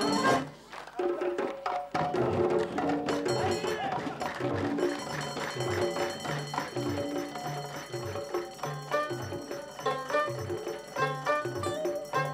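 Live Amazigh folk music: an ensemble playing a steady repeating beat with hand-clapping. The music drops out about half a second in and starts again about two seconds in.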